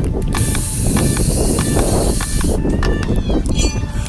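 Wind rumbling on the microphone, with clicks and rustling from hands working at an RC car's battery and ESC wiring. A high hiss runs through the first half.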